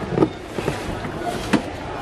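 A cardboard vacuum-cleaner box being handled and shifted on a shelf, with two knocks, one just after the start and a sharper one about one and a half seconds in, over steady background noise.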